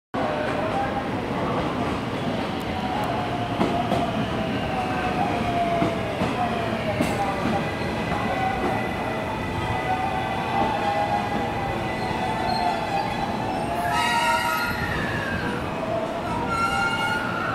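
A JR West 223-series electric train pulling into the station and slowing to a stop. Its motor whine glides down in pitch over running noise from the wheels and rails, with a set of higher tones near the end.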